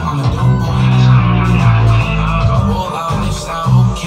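A rap song playing, built on a sample, with strong deep bass notes under a pitched melody.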